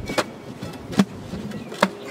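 Tamping bar striking loose backfill dirt around a wooden fence post, three evenly spaced thuds about 0.8 s apart, compacting the soil in the post hole.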